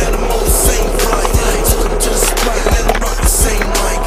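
Skateboard wheels rolling over concrete, with music with a steady beat playing underneath.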